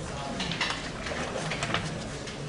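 Chalk writing on a blackboard: a series of short scratches and taps.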